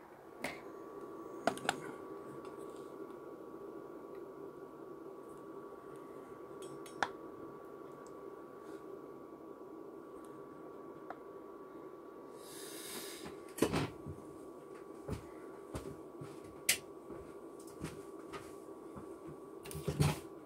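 Steady room hum with a faint, thin steady tone, broken by a handful of scattered sharp clicks and knocks and one short hiss about two thirds of the way through.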